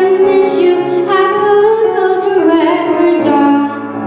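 A young girl singing a pop ballad into a microphone, her voice moving from note to note over a piano accompaniment.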